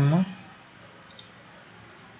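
A single computer-mouse button click about a second in, against a steady low hiss; a drawn-out voice sound trails off at the very start.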